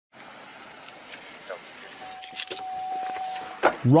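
Road traffic and jangling, rustling handling noise picked up by a police body camera, with a faint high whine in the first half. About halfway in, a steady mid-pitched tone sounds for over a second and stops as a man's voice begins near the end.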